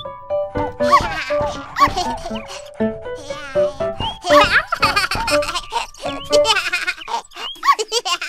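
Children's cartoon background music with short baby vocal sounds and giggles over it.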